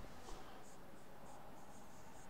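Faint squeaking of a marker pen writing on a whiteboard: a series of short, high strokes.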